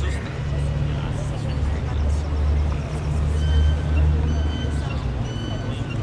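Outdoor plaza ambience: a steady low rumble of traffic or wind with background voices, and a few short, high whistle-like tones in the second half.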